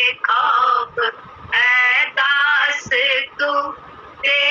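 A woman singing a devotional song in short phrases of held, wavering notes, with a brief pause a little after one second in.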